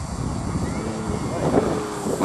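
Electric aerobatic model plane's brushless motor and propeller as it makes a low pass and pulls up into a climb. Under it is a heavy low rumble of wind on the microphone.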